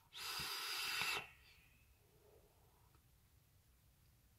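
An inhaled drag on a box-mod vape: about a second of airy hiss as air is drawn through the atomizer, cutting off sharply, then near silence while the vapour is held.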